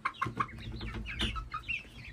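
Short, irregular bird calls repeating several times a second over a faint low hum.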